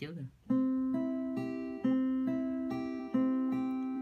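Acoustic guitar fingerpicked slowly: a repeating arpeggio on the top three strings, C, E and G from frets 5, 5 and 3, plucked with index, middle and ring fingers and left to ring. The pattern restarts with a stronger low note about every 1.3 seconds.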